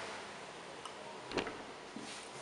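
Light knocks from an acoustic guitar being handled, over a steady faint hiss: a small click a little under a second in, then a sharper knock about a second and a half in.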